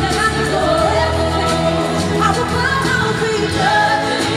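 Live pop music through a concert sound system: a band playing steadily with a singing voice running a wavering melodic line over it.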